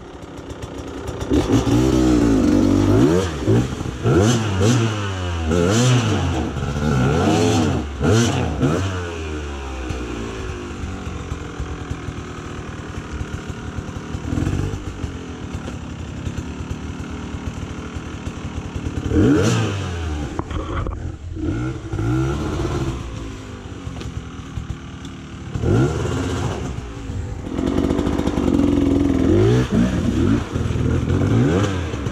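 Off-road dirt bike engines revving up and down in repeated bursts under load on a steep, rocky climb, settling into steadier running between the bursts around the middle.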